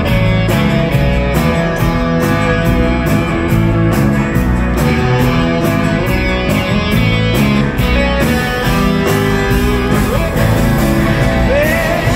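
Live rock band playing with a steady drum beat, electric and acoustic guitars.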